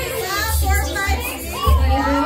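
Several people talking and calling out at once over background music with a heavy bass beat.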